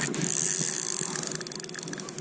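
Fishing reel's drag clicking rapidly as a hooked trout pulls line off on a run.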